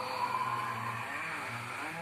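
A man's low, drawn-out growling hum without words, rising and falling in pitch, with a rasping hiss over it.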